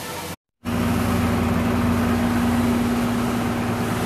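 City transit bus idling at the stop: a steady engine hum with one strong held low tone that does not change. It starts after a short silent break just under a second in; before the break, a brief rush of running water from a small waterfall.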